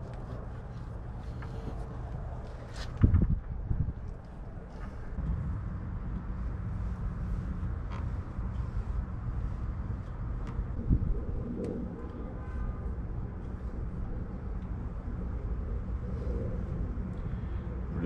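Steady low outdoor background rumble, with a sharp knock about three seconds in and a few light clicks and taps later: parts being handled at a boat's hydraulic steering helm.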